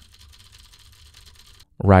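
Faint clatter of a mechanical keyboard with Cherry MX Blue switches being typed on, picked up at a low level by a dynamic microphone that rejects much of it. It is cut off near the end by a voice right on the microphone.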